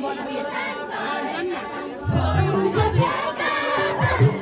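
A group of voices singing a Deuda folk song together in chorus, with low thumps coming in about two seconds in.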